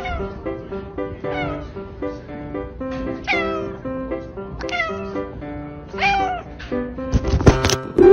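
A silver spotted tabby cat meowing about five times, each meow falling in pitch, over background music.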